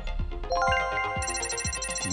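Electronic news-show background music: about half a second in, a bright chime-like chord of several held tones enters over a light steady beat.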